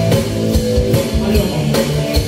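Live rock band playing an instrumental passage with no vocals: a drum kit keeps a steady beat over guitar and bass.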